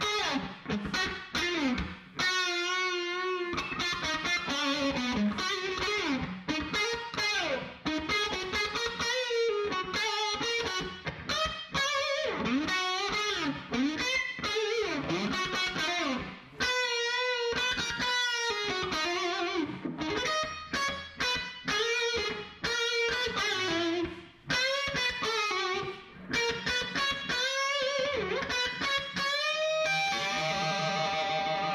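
Distorted electric guitar playing a melodic lead line, a vocal melody rendered on guitar, with wide vibrato and bends on the held notes and short pauses between phrases.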